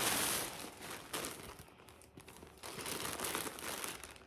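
Crinkling and rustling as a bag and its contents are handled, in several bursts with short pauses in between.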